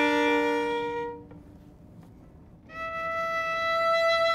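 Solo violin playing slow classical music. Long held notes fade away about a second in, and after a short pause a new single note is bowed and held.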